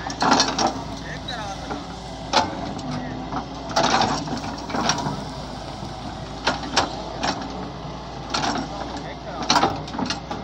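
Doosan DX140W wheeled excavator's diesel engine and hydraulics running steadily while the bucket scrapes and levels soil, with about ten sharp clanks and knocks at irregular intervals of roughly a second.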